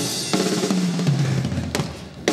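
Live rock band playing: drum kit hits over an electric bass guitar line that steps down in pitch.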